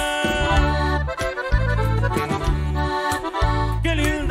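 Norteño band playing an instrumental passage led by the accordion, over steady electric bass notes and rhythmic guitar strumming.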